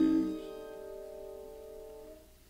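The final chord of a band's studio take of the ballad ends: the full sustained chord stops about a third of a second in, and a few held notes are left ringing and fading away.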